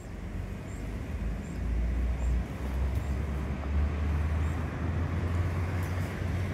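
Road traffic at a city intersection: a steady low rumble of cars and a bus on the road, building over the first couple of seconds and then holding.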